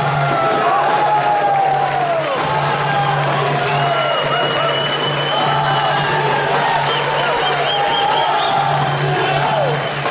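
Arena crowd cheering after a knockout, with pitched calls and whistles gliding up and down over a steady low drone.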